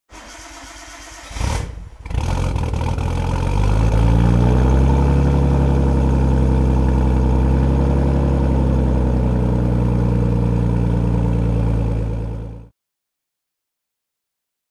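Turbocharged Nissan Skyline GTS-t straight-six starting through a large-bore aftermarket exhaust: it fires with a short loud burst about a second and a half in, then settles into a loud, steady idle. The sound stops abruptly near the end.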